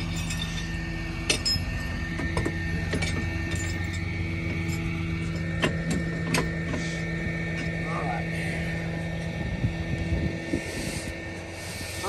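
A flatbed tow truck's engine idles with a steady low hum, while a few sharp metallic clinks ring out as tow chains and hooks are fitted under the car.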